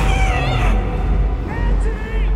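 Film sound effect of flying ants: squeaky chirps sliding up and down, in two short runs, near the start and near the end. Music and a deep steady rumble play under them.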